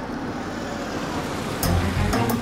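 A police SUV driving in, its engine and tyres making a steady noise, with background music with deep notes and sharp beats starting again about a second and a half in.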